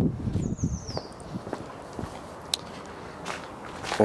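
Footsteps of a person walking on a paved street, with scattered knocks, most of them in the first second, and a short high falling chirp about half a second in.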